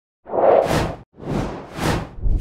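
Whoosh sound effects for an animated title: two swooshes about a second apart. The first swells and cuts off suddenly, and the second builds toward the end.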